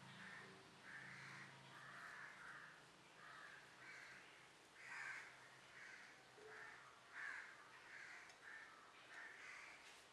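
Faint repeated bird calls, about one or two a second, over near silence.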